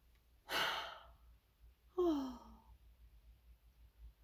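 A woman breathes in through her nose, smelling a Scentsy wax melt bar held under it, then lets out a short voiced sigh that falls in pitch.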